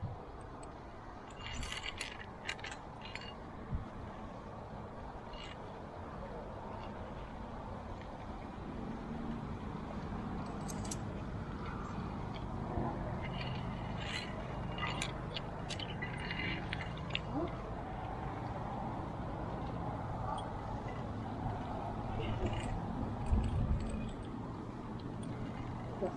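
Scattered metallic clinks of via ferrata lanyard carabiners knocking against the steel safety cable and metal rungs, over a steady background rush.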